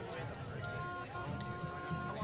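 School concert band's wind instruments sounding a steady held note, starting about a third of the way in and breaking off briefly once, over the chatter of a seated crowd.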